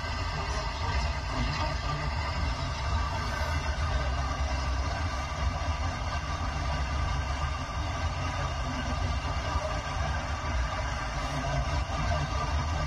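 Car radio speaker playing a distant FM station on 88.1 MHz received by sporadic-E skip: music from Moroccan national radio (SNRT Al Idaâ Al-Watania) coming through a steady wash of noise.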